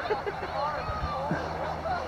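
Faint, distant voices of people calling out, over a steady low hum.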